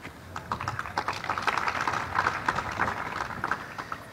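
Audience clapping: a dense patter of claps that builds about half a second in and thins out near the end.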